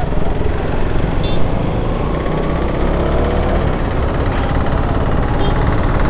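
KTM Duke 390's single-cylinder engine running at steady road speed, heard from the rider's position with wind and road noise over the microphone.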